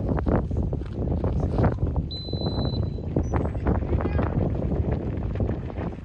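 A referee's whistle blown once, a short steady blast about two seconds in, signalling the kickoff. Around it, wind buffets the microphone and voices call out across the field.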